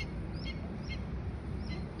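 A bird chirping over and over, short high chirps about three a second, over a low outdoor background rumble.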